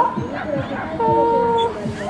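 A dog barking at the start amid background crowd chatter. About halfway through, a steady held tone lasting under a second is the loudest sound.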